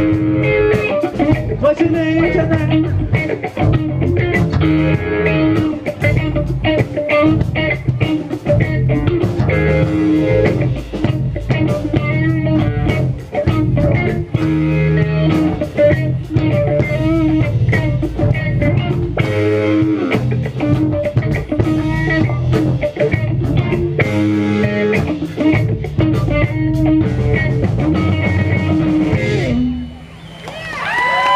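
A live rock band playing: electric guitars over a drum kit keeping a steady beat, heard from right beside an amplifier on the stage. The song stops right at the end.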